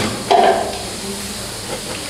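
A steady hiss of background noise, with a brief louder sound about a third of a second in.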